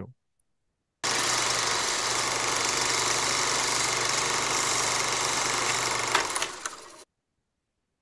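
Steady mechanical whirr of a film projector sound effect with a low hum, starting abruptly about a second in and fading out near the end.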